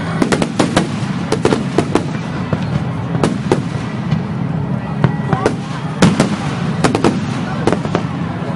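Aerial fireworks shells bursting: an irregular string of sharp cracks and bangs, bunched in clusters, over a continuous low rumble.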